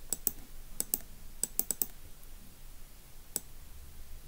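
Scattered keystrokes on a computer keyboard as a table cell is edited. There are a few quick clicks in the first two seconds, including a rapid run of four, then a single click later on.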